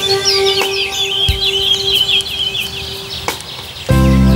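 Songbirds singing quick, high chirps and a rapid trill over soft, sustained new-age synthesizer music. The music swells louder near the end.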